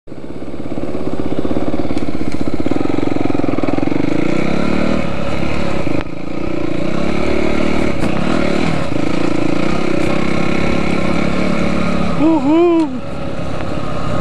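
Dirt bike engine running under throttle while riding a trail, its pitch wavering up and down with the throttle. The sound dips briefly about six seconds in, and a short rising-and-falling vocal sound comes near the end.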